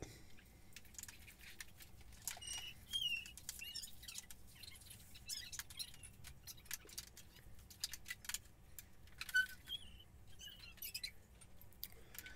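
Faint scattered clicks and taps of hard 3D-printed plastic blaster parts being handled and fitted together, with a few faint high chirps about two to three seconds in and again near the end.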